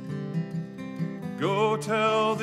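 Acoustic guitar playing a song's accompaniment between sung lines. A singer's voice comes in with vibrato about one and a half seconds in.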